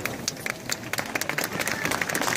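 Crowd applauding: many hands clapping irregularly and steadily.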